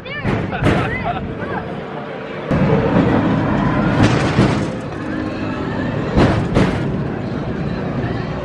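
Carnival halfpipe 'skateboard' ride running: the car rumbles loudly along its track, the rumble swelling about two and a half seconds in, with several sharp clunks, and riders' voices.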